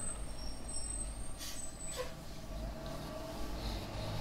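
A heavy road vehicle passing outside, a steady low rumble, which the listener calls really loud.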